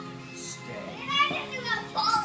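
Children's high voices calling out and squealing over film music playing from a television, with a louder shout right at the end.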